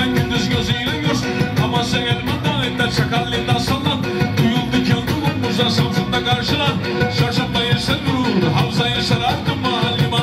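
Live Black Sea (Karadeniz) folk music for horon dancing, with a fast, steady beat, a melody line and singing.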